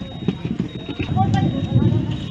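On-scene sound at a large fire: people's voices amid irregular knocks and crackles, with a faint steady high whine running underneath.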